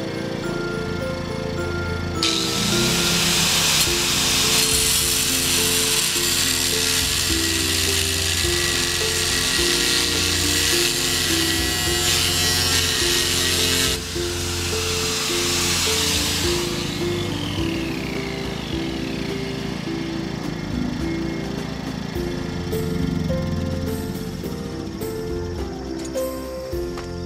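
A hand-held electric power tool runs under load for about twelve seconds, cutting or drilling, then is switched off and winds down with a falling whine over a few seconds. Background music with a steady beat plays throughout.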